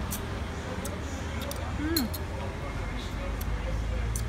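Close-up eating sounds: chewing with several short, sharp mouth clicks and smacks, over faint background voices and a steady low traffic rumble.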